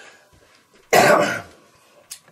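A man coughs once, loudly, about a second in.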